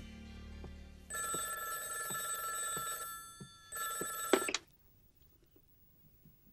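Landline telephone ringing twice, a ring of about two seconds, then a shorter second ring that is cut off with a clatter as the handset is lifted.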